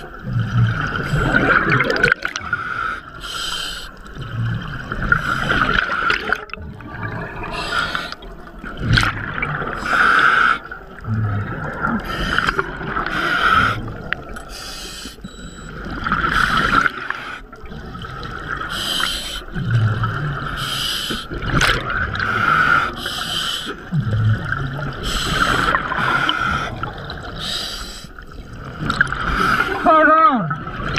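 Scuba regulator breathing underwater: a hissing inhale through the regulator alternating with a bubbling exhale, about one breath every two to three seconds.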